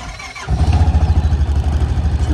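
Honda Pioneer 700 side-by-side's engine being started: a short crank, then it catches about half a second in and settles into a steady, fast-pulsing run. This cold start is one this engine is known not to like.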